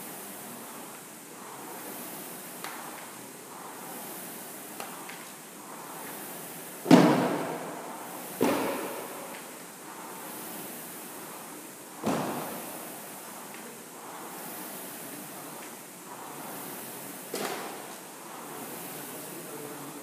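A barbell loaded with bumper plates dropped onto a rubber gym floor four times, each a heavy thud with a ringing tail, the loudest about seven seconds in. Underneath, the steady whoosh of an air rowing machine's flywheel, swelling with each stroke about every two seconds.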